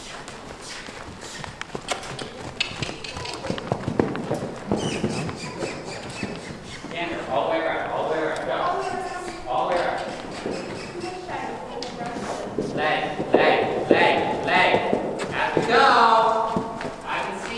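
Hoofbeats of a ridden horse trotting on the dirt footing of an indoor arena, a run of soft knocks most plain in the first half. Voices talking join from about halfway through.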